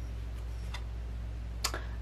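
Light clicks of a tarot card being drawn from the deck and flipped over, faint at first with a sharper snap near the end, over a steady low background hum.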